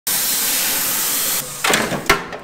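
Angle grinder grinding the steel frame, a loud steady hiss that stops about one and a half seconds in, followed by a second short burst of noise near the end.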